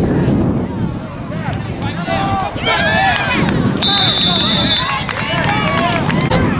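A whistle blown once for about a second, a steady shrill tone, over wind buffeting the microphone and raised voices shouting during a youth flag football play; the whistle ends the play.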